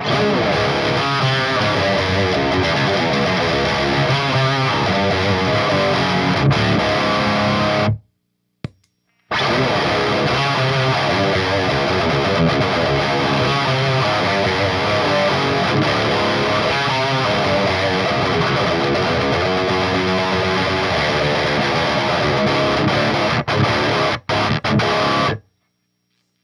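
Distorted electric guitar riffing through a Redbeard Poltergeist amp and a 2x12 cabinet with Eminence speakers, played loud in two passages with a break of about a second, eight seconds in. It is heard before and after a Finch Scream tube-screamer-style overdrive is switched in as a clean boost, volume cranked and gain all the way down. The playing stops in several short breaks near the end.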